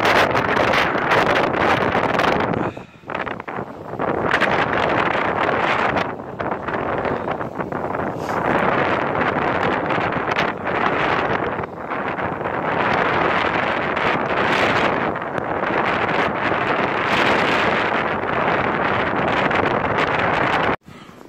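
Strong wind blowing hard across the microphone in loud gusts, easing briefly about three seconds in.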